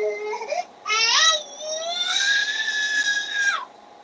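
A toddler wailing in a high voice: short whimpers and a rising whine about a second in, then one long wail held at a steady pitch for about a second and a half that cuts off sharply.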